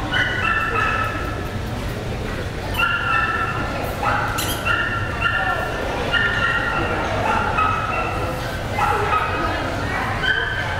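A dog whining in high, drawn-out cries that come again every second or so, over the murmur of a crowd in a large hall.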